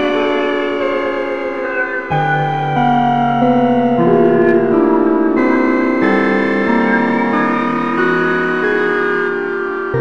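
Slow dark ambient music of sustained, layered keyboard tones, the chord shifting to new pitches every second or so.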